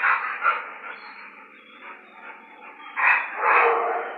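Dog barking: two short barks at the start and two louder ones about three seconds in.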